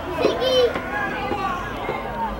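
Several voices shouting and calling over one another at a football match, with one loud, drawn-out shout about half a second in.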